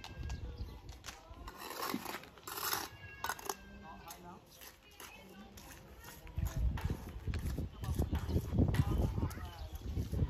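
People's voices talking at a distance, with a low, irregular rumble on the microphone growing louder in the second half.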